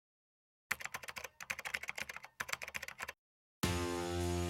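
Rapid keyboard typing clicks in three short runs, then guitar music starting just before the end.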